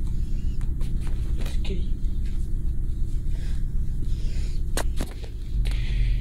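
A steady low rumble of handling noise on a handheld phone's microphone, broken by a few sharp clicks and knocks, most near the start and about five seconds in.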